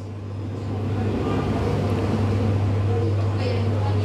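Steady low rumble of a vehicle, growing louder about half a second in and then holding level.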